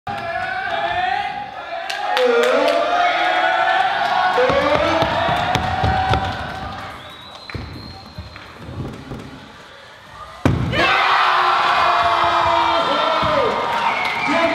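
Stunt scooter wheels and deck knocking and rolling on wooden skatepark ramps, then a sharp landing impact about ten seconds in, followed at once by a crowd of kids shouting and cheering.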